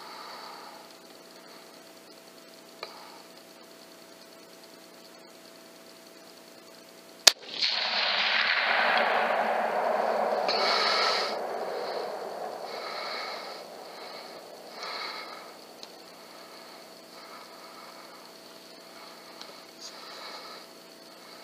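A single sharp 6.5 mm Creedmoor rifle shot about seven seconds in. It is followed by a loud rushing noise that lasts a few seconds and slowly fades, then a few faint knocks.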